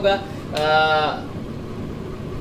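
A man's drawn-out hesitation 'aah', held at a steady pitch for about half a second, starting about half a second in.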